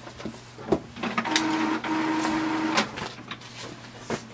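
HP Envy 5034 all-in-one printer starting a black-and-white copy. A few clicks come first, then its mechanism runs for about two seconds with a steady whine, briefly breaks once, and stops.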